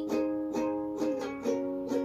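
Music: a ukulele playing the accompaniment of a slow song, with pitched notes changing about every half second.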